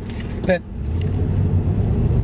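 Car engine and road noise heard from inside the cabin while driving: a steady low hum that gets louder just after a short spoken word about half a second in.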